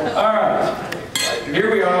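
Two sharp clinks close together about a second in, the second ringing briefly, as of tableware or a hard object being set down.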